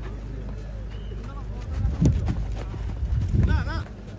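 Outdoor sound of a casual football game on a dirt pitch: players' voices and a shout near the end, over a low wind rumble on the microphone. A sharp thud about two seconds in, the loudest sound, is a ball being kicked.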